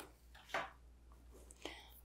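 Painting tools being handled on a work table: two short, soft knocks, about half a second in and again near the end, as a handheld torch is set down and a tool is picked up, with quiet in between.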